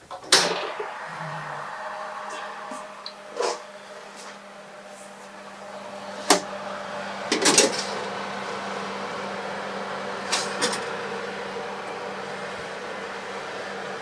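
Kitchen oven open, its fan running with a steady hum that starts with a click at the opening of the door. Several sharp metallic knocks and clinks come from a baking tray and a quiche tin being slid onto the oven racks.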